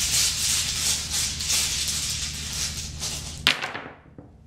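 Rune stones shaken together in cupped hands, giving a continuous dry rattle, then cast onto a cloth-covered table with a short sharp clatter about three and a half seconds in.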